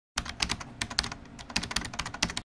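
Typing on a computer keyboard: a quick, uneven run of key clicks, several a second.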